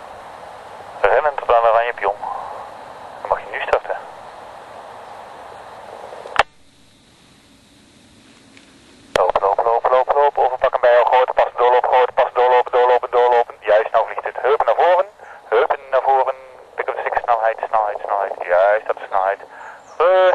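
A man's voice coming through a two-way radio, thin and hissy, calling out launch and flying commands such as 'lopen, lopen, lopen' (run). There are a few short calls at first, a pause about six seconds in, then a steady stream of commands.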